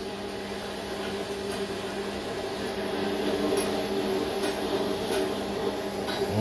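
A steady electric hum with a few faint metallic clicks in the second half, as pliers clamp the lead of a starter motor's carbon brush.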